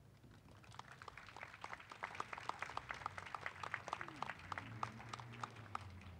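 A small audience clapping outdoors, faint and scattered. The clapping starts about a second in, fills out, then thins near the end.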